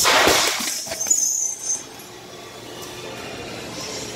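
A hard punch lands on a hanging heavy bag, and the bag's metal hanging chain rattles as the bag swings. Sharper clinks from the chain follow about a second in.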